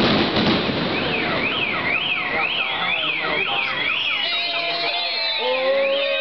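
Fireworks crackling and bursting over the first couple of seconds, then an alarm wailing, its pitch sweeping up and down about twice a second.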